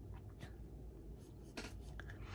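Watercolor brush stroking and dabbing paint onto a Moleskine sketchbook page: a few faint, short scratchy strokes.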